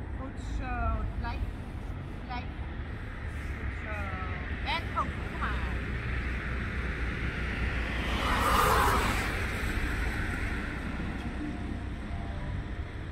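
Street traffic: a car passing, its noise swelling to the loudest point about eight to nine seconds in, over a steady low rumble of wind on the microphone. A few short high chirps come near the start and again about four seconds in.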